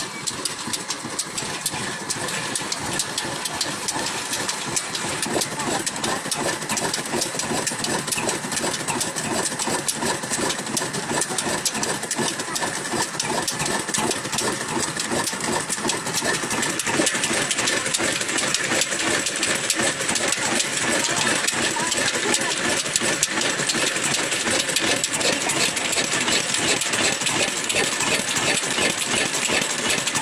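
Old black stationary diesel engine running steadily with a rapid, even beat, louder from about halfway through.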